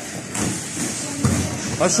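Sound of a sparring session in a large gym: dull thuds and shuffling of feet and gloves on the mats, with a louder thud about a second in. A man's shout begins right at the end.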